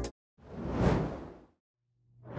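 A single whoosh sound effect for a logo transition, swelling up and fading away over about a second.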